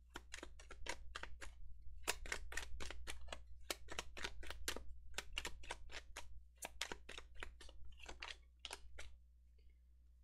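A tarot card deck being shuffled by hand: a rapid run of crisp card slaps and flicks, about five or six a second, that stops about nine seconds in.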